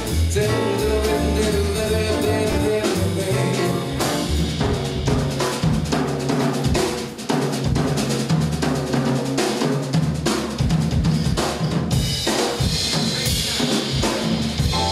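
Jazz rhythm section playing a bebop tune without vocals: drum kit prominent with snare and rimshot accents over upright bass and piano.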